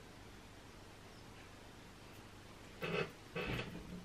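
Faint room tone while lip gloss is applied. Near the end come two short, soft mouth sounds: lips pressing and parting on the fresh gloss.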